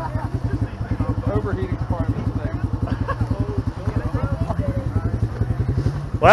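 Engine of a battered demolition-derby pickup idling with a steady, rapid, even pulse, while voices talk in the background.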